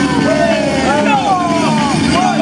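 Several young men's voices shouting and calling out in excited, overlapping yells, hyping up a krump dancer.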